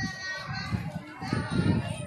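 Many schoolchildren talking and chattering together, with a few low rumbling bumps on the microphone around the middle and near the end.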